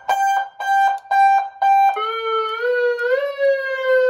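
Aftermarket electronic siren/PA system sounding through its speaker, really loud: first a pulsed beeping tone about two and a half times a second, then about halfway it switches to a continuous siren tone that rises slowly and begins to fall.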